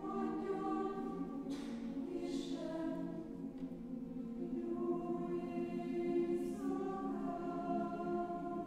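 Mixed choir of men's and women's voices singing sustained chords in a large church, the harmony shifting a few times, with brief sung 's' sounds.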